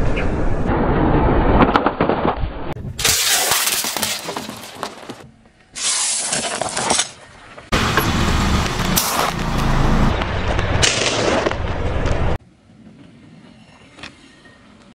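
Car tyres rolling over and crushing objects in a run of short clips, with loud crunching and cracking as things such as a block of dry instant noodles break under the weight. It drops to a low level about a second and a half before the end.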